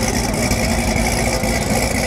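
A car engine idling steadily, with a deep low rumble.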